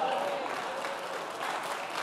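Congregation applauding steadily, with a few voices faintly underneath.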